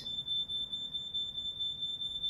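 A steady, unbroken high-pitched electronic tone, like a long held beep, over faint low background noise.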